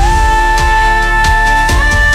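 Outro rock music with a steady drum beat and a held lead note that slides upward in pitch, once at the start and again near the end.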